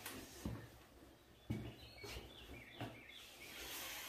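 Faint bird chirps in the background, a short run of calls about two seconds in, with a few soft thumps.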